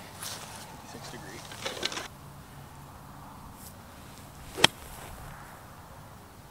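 A golf club striking the ball on a short pitch shot: one sharp click about four and a half seconds in.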